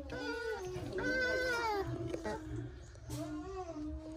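Bamboo rats giving whining, moaning calls: three calls, with the middle one longest and wavering in pitch.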